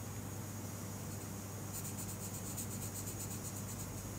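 Coloured pencil shading on paper in quick, short back-and-forth strokes, over a steady low hum.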